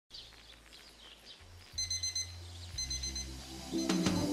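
Digital alarm clock beeping in bursts of rapid high beeps, each burst about half a second long and roughly a second apart, starting a little under two seconds in. Music begins just before the end.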